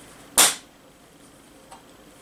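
Small round metal cough-drop tin popping open once with a sharp snap as it is squeezed, its spring lid flipping up. A faint tick follows about a second later.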